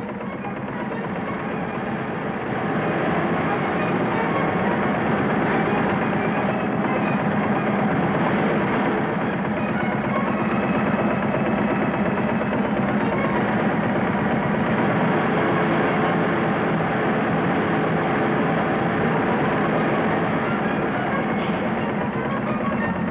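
Early Deutz MTZ tractor's two-cylinder horizontal engine running steadily with a fast, even pulse while belt-driving a threshing machine. The sound builds over the first couple of seconds and then holds.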